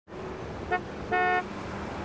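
Car horn honking twice on a street: a short toot, then a slightly longer one, over steady background noise.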